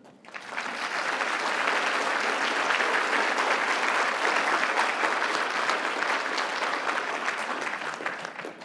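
Conference audience applauding at the end of a talk: the clapping rises quickly in the first second, holds steady, and dies away near the end.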